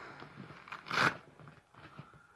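Fabric tackle bag being handled: light scraping and rustling of the cloth, a few small clicks, and one short, louder rustle about a second in.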